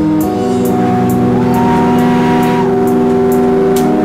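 Indie rock band playing live: bass and electric guitars holding sustained notes over a steady ticking beat of about three a second. One held note slides up a little about a second in and back down shortly after the middle.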